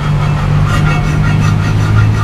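Hand file rasping in repeated strokes across the scuffed lip of an alloy wheel, filing down kerb damage. Under it runs a steady low hum of an idling engine.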